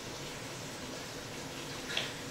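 Steady low background hiss of room tone, with a faint click near the end.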